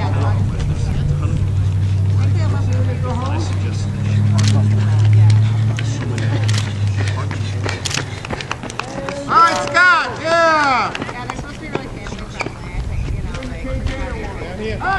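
Finish-line spectator sounds: a steady low hum for the first half, scattered sharp claps, and a short run of high, rising-and-falling whooping calls from voices about ten seconds in.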